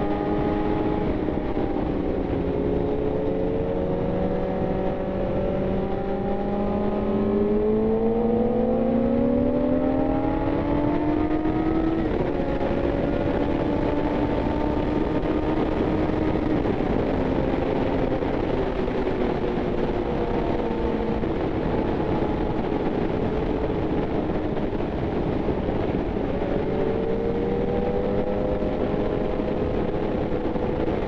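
Yamaha FZ1's inline-four engine under way, with wind rushing over the microphone. The engine climbs steadily in pitch for several seconds, drops at an upshift about twelve seconds in, runs fairly steady, then climbs again near the end.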